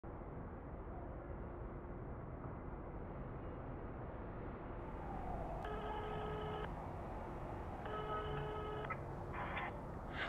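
Steady low hiss, then two telephone ringing tones about a second long each, a little over a second apart, like a call ringing out on the line, with a short rustle near the end.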